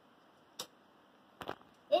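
A few light clicks of small die-cast toy cars being handled and picked up off a wooden shelf: one about half a second in, then two close together about a second and a half in.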